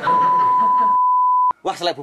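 Bleep tone added in editing: a single steady high beep held for about a second and a half, ending abruptly with a click.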